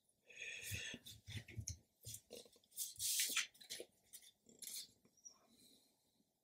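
Faint handling noises from a black plastic folding magnifier being opened and a decal sheet being moved on a cutting mat: a run of irregular small clicks and rustles, with a longer rustle about three seconds in.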